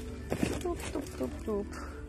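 A woman's voice making a few brief, quiet murmured sounds, short wavering pitch glides rather than clear words, over a steady low hum.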